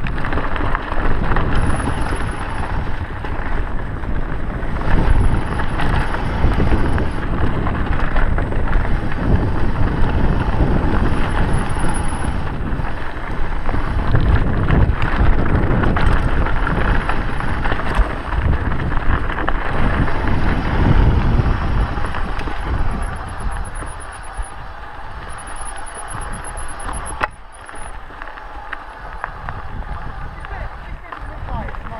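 Mountain bike riding fast down a dirt forest trail: tyres running over dirt and roots, the bike rattling and knocking over bumps, and wind buffeting the microphone. It eases off somewhat in the last few seconds.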